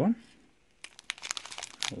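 Small plastic zip bags of diamond-painting resin drills crinkling as they are handled. A quick run of crackles starts about a second in.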